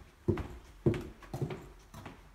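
Footsteps on a tile floor, a sharp knock about every half second as someone walks.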